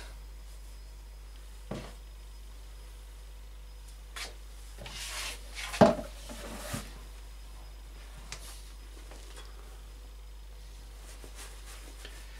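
Intermittent handling of old black leather jackboots during oiling: a cloth rubbing on the leather, a few small clicks, and one sharp knock just before six seconds in, with quiet room tone between.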